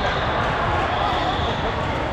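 Busy indoor volleyball gym: a steady din of many voices from players and spectators, with volleyballs thumping as they are hit and bounce on the hardwood courts.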